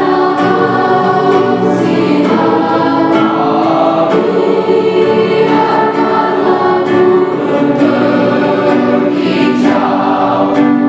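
Mixed choir of teenage girls and boys singing in several-part harmony, with long held chords that keep going without a break.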